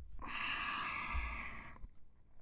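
A person's long, breathy breath, lasting about a second and a half, then stopping.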